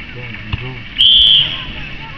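Referee's whistle, one short steady blast about a second in, over faint shouts from players and spectators; a short thud comes shortly before it.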